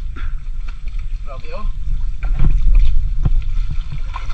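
Steady low rumble of wind on the microphone, with scattered wet squelches and knocks from hands digging in soft creek-bank mud and shallow water.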